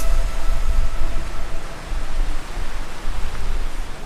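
Loud, steady rushing noise with a deep, fluctuating rumble underneath.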